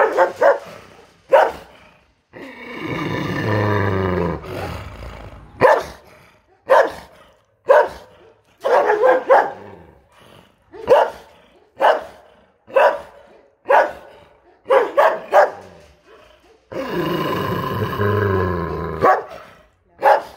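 A large brindle dog in a kennel barking hard and repeatedly, short sharp barks about one a second. Two long, deep, drawn-out cries come between the barks, one early and one near the end.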